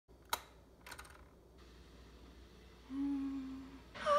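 Stainless-steel electric kettle's switch clicked on, a sharp click followed by a softer second click, over a faint low hum. Near the end a brief steady low tone sounds for just under a second.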